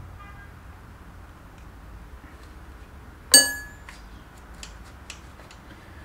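A small metal hand tool striking metal once about three seconds in: a sharp clink that rings briefly, followed by a few faint ticks of handling.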